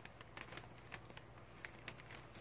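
Paper backing being peeled off flannel fused with Heat and Bond Lite iron-on adhesive: faint, irregular small crackles and ticks as the paper pulls away from the glue.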